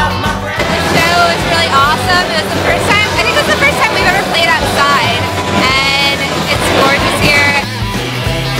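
Rock music from a band playing, with a voice over the music.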